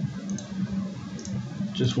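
A few faint computer mouse clicks over a low steady hum, as a file-type dropdown is opened and an option picked.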